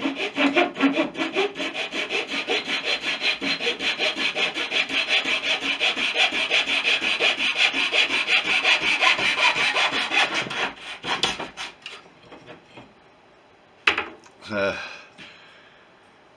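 Fine-toothed hand saw cutting across a strip of wood in quick, even strokes. The sawing stops about eleven seconds in, and a single sharp knock follows a couple of seconds later.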